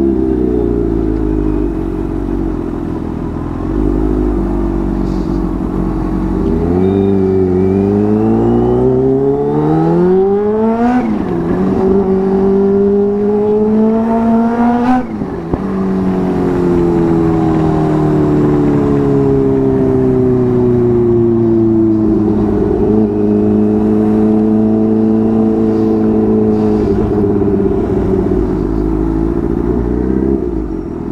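Kawasaki Ninja H2's supercharged inline-four engine under way. Its revs climb twice through the middle, with a dip between at a gear change, then drop sharply as the throttle is closed. The revs sink slowly and hold fairly steady near the end.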